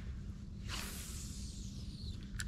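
A cast with a spinning rod: a whoosh of hissing starts a little under a second in as the line pays out through the guides, then fades away.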